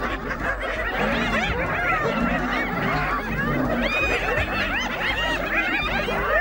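A pack of spotted hyenas giggling, many high cries that rise and fall, overlapping without a break. This is the excited, stressed giggle hyenas give in a fight with a lion.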